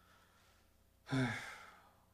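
A young man's breathy, disappointed sigh, a drawn-out "eiii", about a second in, loudest at the start and trailing off.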